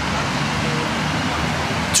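Steady road-traffic noise: an even hiss with no distinct events.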